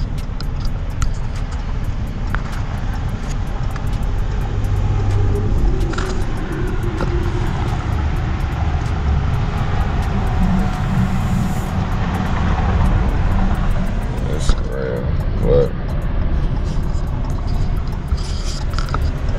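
Steady low rumble inside a pickup truck's cab: the idling engine, with wind noise. A couple of short voice-like sounds come a little after the middle.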